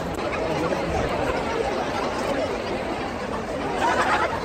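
Crowd of many people chatting at once: a steady babble of overlapping voices.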